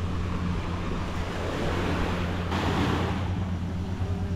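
Surf washing onto a beach, swelling into a louder rush about halfway through, over a steady low hum.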